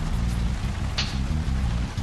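A bushfire burning, a dense crackling rush of flames with one sharper crackle about a second in, over low background music.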